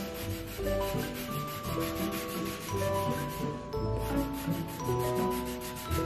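A stick of charcoal scratching back and forth across paper in quick, repeated strokes, laying down a solid black layer. Soft background music with a melody plays along with it.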